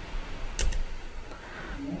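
A few light clicks about half a second in, over quiet room tone: the computer recording being stopped.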